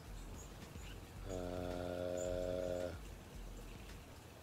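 A man's drawn-out 'uhhh' at one steady pitch, held for about a second and a half from just over a second in: a hesitation while he searches for a word. Faint low background noise around it.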